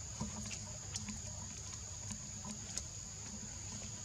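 Steady high-pitched drone of forest insects, with scattered light clicks and patters over a low rumble.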